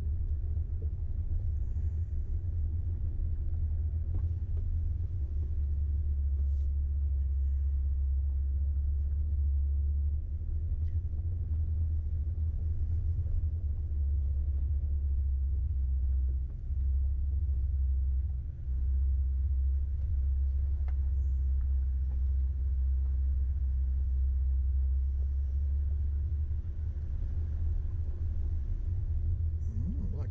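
Off-road vehicle climbing a rough dirt track at low speed: a steady low rumble of engine and tyres on gravel, dipping briefly twice past the middle.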